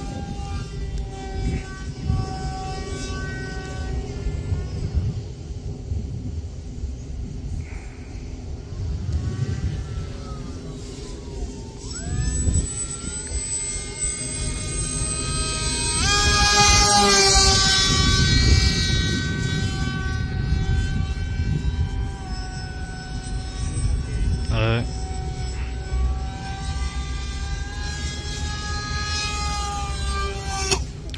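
Electric motor and propeller of an FT22 RC foam plane whining in flight, its pitch gliding as it turns and changes throttle, with low wind rumble on the microphone. The whine is loudest about halfway through as the plane passes low and close.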